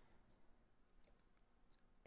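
Near silence with a few faint, sharp clicks of a computer mouse, a pair about a second in and one near the end, as the lecture slide is advanced.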